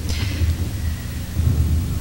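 A low steady rumble with a faint hiss: room and microphone noise on an old recording, with a brief soft hiss right at the start.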